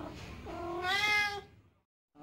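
Domestic cat meowing once, a single drawn-out meow of about a second that rises a little in pitch and then falls; it is not a hunger call.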